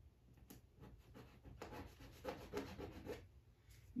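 Masking tape being pressed and rubbed down onto a painted canvas with the fingertips: faint, scratchy rubbing in short strokes, with a small click about half a second in.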